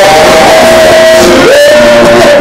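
Live worship singing: men's voices holding long notes into microphones over a band with guitar, sliding into a new note about halfway through. Loud throughout.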